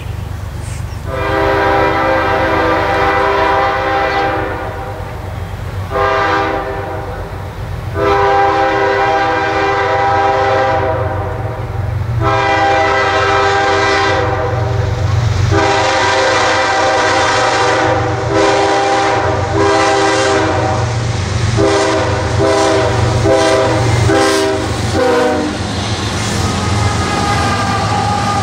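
Air horn of an approaching CSX freight train's lead diesel locomotive sounding a string of about six blasts, mostly long with one shorter, over the steady low rumble of the train.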